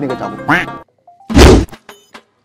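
A shouted line breaks off. After a brief pause there is a single loud, heavy whack about a second and a half in, lasting under half a second.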